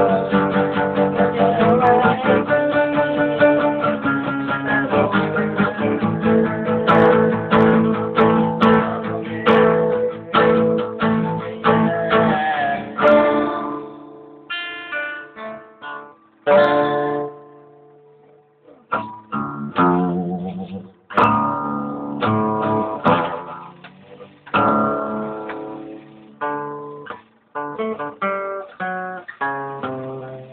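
Acoustic guitar played solo: busy strummed chords through the first half, then slower, sparser chords and picked notes with short pauses between them.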